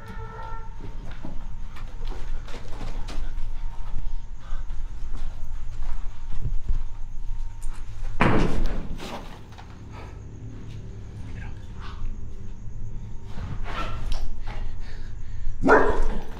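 A German shepherd barking twice, one loud bark about eight seconds in and another near the end, amid scattered light clicks and scuffs.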